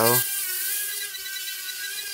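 JJRC H36 mini ducted quadcopter hovering: a steady, high-pitched buzzing whine from its four small motors and ducted propellers.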